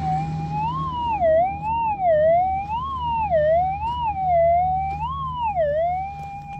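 Minelab GPX 6000 gold detector's audio: its steady threshold tone warbles up and down in pitch about once a second as the coil is passed over the dug hole. This is a good-sounding target signal, which turns out to come from a piece of lead shot rather than gold.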